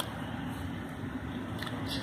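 Steady low background noise in a room, with a couple of faint clicks from the phone being handled as it pans.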